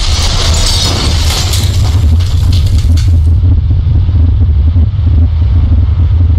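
Animated-intro sound effect: a deep, steady rumble, with a crash of crumbling stone and scattering debris over the first three seconds or so.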